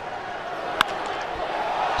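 Crack of a wooden baseball bat meeting a pitch: one sharp knock about a second in, over a ballpark crowd that grows louder afterward.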